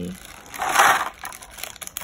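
Thin clear plastic packaging tray crunching as it is handled, with one loud crunch about half a second in and a few lighter crackles after it. The tray is cracked and torn apart.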